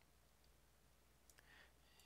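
Near silence: room tone, with a faint computer mouse click about one and a half seconds in.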